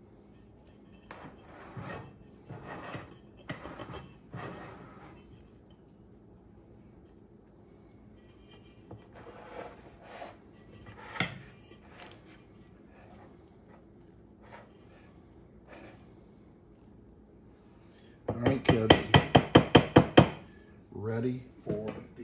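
A spatula scrapes cake batter around in metal round cake pans. Later comes a quick run of about ten loud knocks in two seconds, as a batter-filled pan is rapped on the counter to level the batter, and a few softer knocks near the end.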